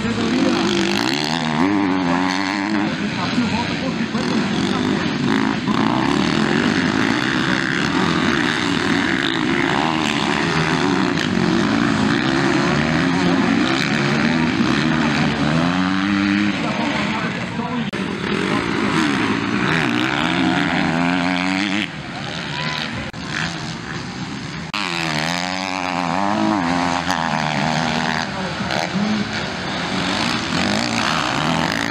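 Several motocross dirt bikes racing, their engines revving up and down through throttle changes and shifts, with the sounds of different bikes overlapping as they pass. The level drops briefly about two-thirds of the way through.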